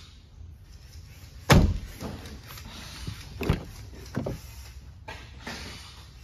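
Mercedes W210 E55 AMG car doors: one loud solid thud about a second and a half in, then two lighter clunks at about three and a half and four seconds in.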